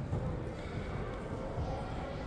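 Gymnasium background: a faint murmur of voices with a few soft low thuds on the hardwood floor.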